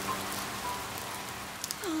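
Steady rain falling: a rain sound effect.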